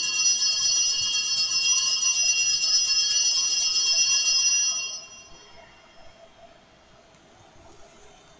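Altar bells (sanctus bells) shaken in a continuous jingling ring at the elevation of the host after the consecration, stopping about five seconds in.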